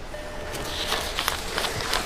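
Paper banknotes rustling and flicking as a wad of bills is counted by hand: a quick run of short crisp rustles, with faint music underneath.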